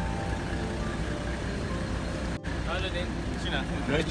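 A steady low rumble, with people's voices talking faintly from about three seconds in.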